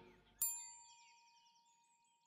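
A single bell-like chime struck about half a second in, ringing with several high tones and fading away over a second or so, with a faint high shimmer over it.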